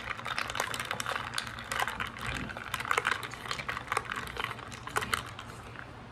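A metal straw stirring ice in a glass mason-jar mug of lime-ade: quick, irregular clinks and rattles against the glass, dying away about five seconds in.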